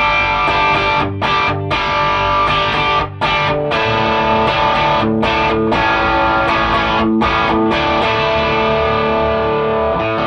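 Electric guitar (Gibson SG with humbuckers) played through a Wampler Cranked OD overdrive pedal into a Matchless Chieftain amp: overdriven chords and riffs with a few short breaks, ending on a chord left to ring from about eight seconds in.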